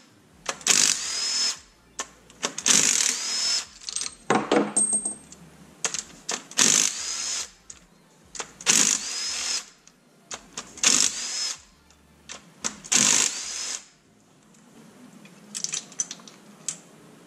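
Cordless drill-driver backing out LS1 rocker-arm retainer bolts one after another: about seven short runs, roughly one every two seconds, each spinning up to a steady high whine, with metallic clicks of bolts and rockers being set down between them.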